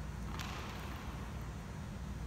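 Room tone of a large gymnasium, a steady low hum, with one short sharp sound about half a second in that rings on briefly in the hall.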